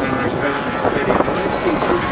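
Engines of several radio-controlled model warbird aircraft droning steadily overhead, with indistinct voices over them.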